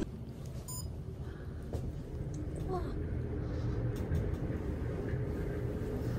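Glass-walled elevator ascending, with a steady low rumble that grows louder a few seconds in. A short electronic beep sounds just under a second in.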